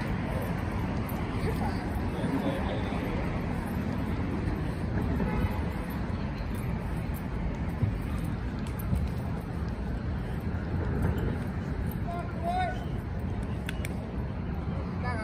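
City street ambience: a steady rumble of traffic with scattered voices of people nearby.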